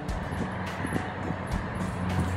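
Steady outdoor background rumble of distant road traffic, picked up by the camera's microphone.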